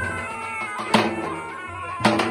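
Two zurlas (Balkan folk shawms) playing together: a loud, reedy melody of held and bending notes over a steady held tone. A heavy drum stroke lands about a second in.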